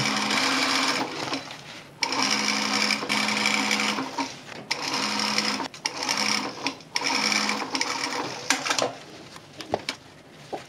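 Pfaff sewing machine topstitching around the cuff of a boot made of stiff material. It sews in several short runs with brief stops as the work is turned, and stops near the end.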